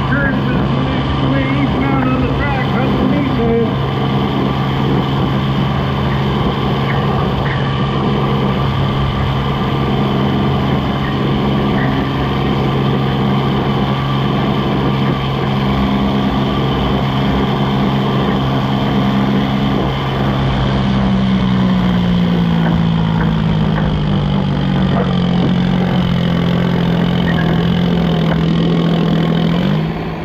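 Diesel garden tractor engine running hard under load as it pulls a sled down the track, a steady note that slowly sinks in pitch over the last ten seconds as the engine lugs down under the growing drag of the sled, then drops off suddenly at the end of the pull.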